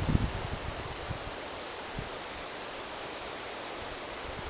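Wind buffeting the camera microphone in a few low rumbles during the first half-second, then a steady, even outdoor hiss. No bee buzz stands out.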